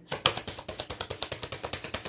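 Tarot deck being shuffled by hand: a rapid, even run of card clicks, about a dozen a second.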